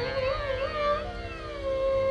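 Hindustani dhrupad vocal music between phrases. The singer's voice glides and fades out about a second in, leaving the steady tanpura drone.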